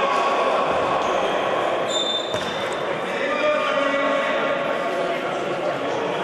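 Futsal ball being kicked and bouncing on a sports-hall floor amid players' voices, all echoing in the hall, with a couple of short high squeaks about two seconds in.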